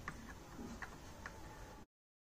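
Faint room tone with three light clicks about half a second apart, then the sound cuts off abruptly to silence near the end.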